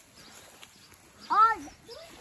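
A young child's voice: one short, loud, high-pitched call that rises and falls in pitch, about one and a half seconds in.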